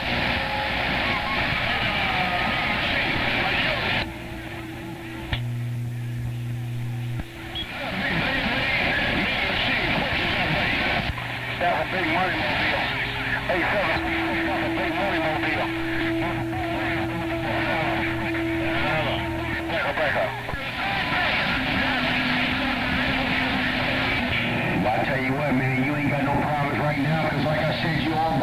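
CB radio receiver audio on a busy skip channel: garbled, overlapping voices of distant stations through static, with steady tones coming and going for a few seconds at a time.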